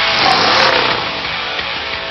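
A Pontiac GTO's V8 engine revving hard, starting suddenly and loudest in the first second before holding steady, mixed with music.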